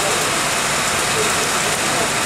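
Heavy rain falling steadily on rooftops, a dense, even hiss with no let-up.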